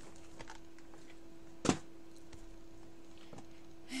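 Quiet room tone with a steady low electrical hum, and one sharp click a little under two seconds in, with two fainter ticks around it.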